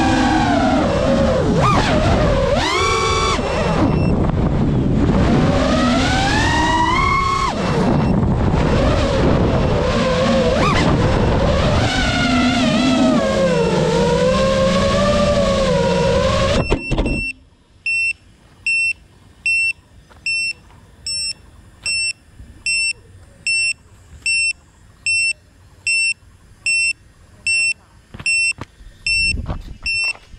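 3.5-inch FPV quadcopter's motors whining, the pitch rising and falling with throttle, until they cut off suddenly about two-thirds of the way in. After that, an electronic beeper gives a short high beep a little more than once a second.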